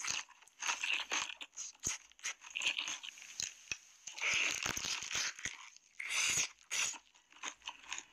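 A person biting into a sauce-coated fried chicken drumstick, the coating crunching as she bites and chews in irregular bursts. The loudest bite comes about four seconds in.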